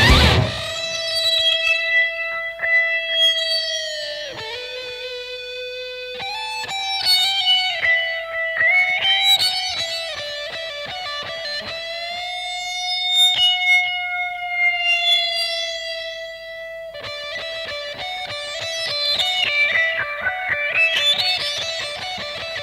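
The full band stops abruptly and a lone electric guitar plays on: long sustained notes bent in pitch, then, a little over two-thirds of the way in, fast repeated picked notes whose line climbs near the end.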